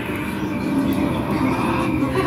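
A steady, low rumbling drone: the dark monster exhibit's ambient horror soundtrack playing over loudspeakers.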